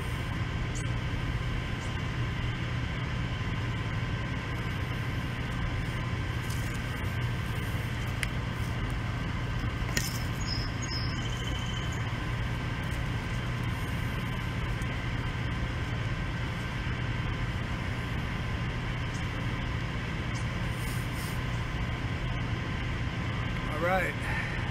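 A steady machine hum with a few constant tones, unchanging throughout, with a single brief click about ten seconds in.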